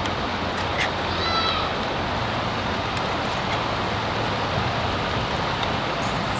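Steady rushing of river water, with a brief high-pitched call about a second in. A few light clicks come from a wire strainer scooping food from a pan onto an enamel plate.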